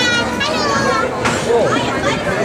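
Children's high voices talking and calling out over steady background crowd chatter.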